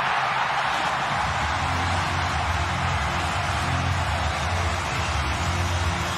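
Stadium crowd cheering a goal, a loud, even roar, with low steady music coming in about a second in.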